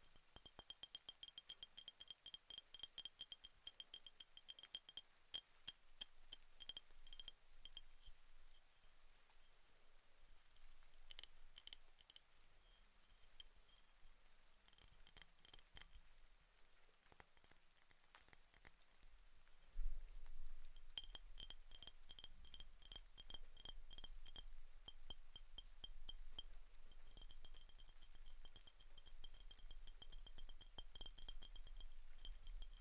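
A drinking glass of milk being tapped quickly and lightly, each tap giving a short, high glassy ring. The taps come in long rapid runs broken by sparser stretches.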